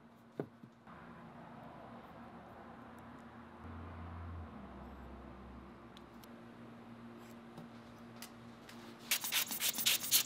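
Hands and a small tool rubbing and scraping in oil-bonded Petrobond casting sand in a plywood mold box, faint and steady, with a quick run of louder scratching strokes near the end.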